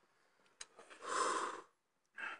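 A short click about half a second in, then one heavy breath of under a second from a man.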